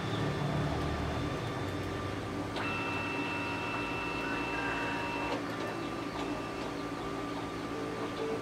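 Canon D520 multifunction printer's scanner running a scan: a low motor hum for the first two seconds, then a steady high whine from about two and a half seconds in that stops at about five and a half seconds.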